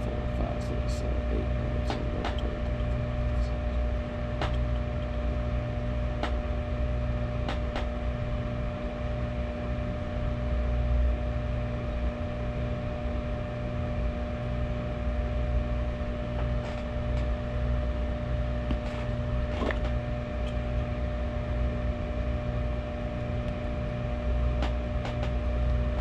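Steady hum of a running appliance, holding a couple of even tones over a low rumble that swells and fades, with a few faint clicks.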